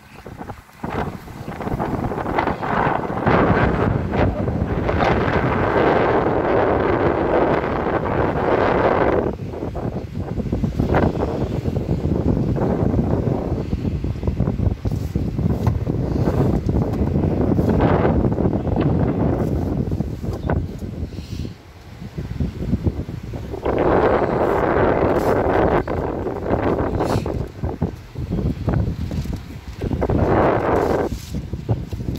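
Wind buffeting the microphone: a loud, low rushing noise that rises and falls in gusts and eases briefly about two-thirds of the way through.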